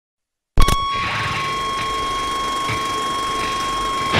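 A loud click about half a second in, then a steady high-pitched tone held over hiss and low crackle until it cuts off near the end.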